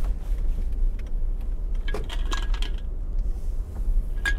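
A brief metallic jingle of small clinking pieces about two seconds in, over a steady low rumble.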